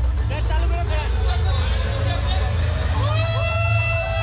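Audience chatter in a large hall over a steady deep bass from the event sound system. About three seconds in, several tones rise in pitch and hold as the music builds.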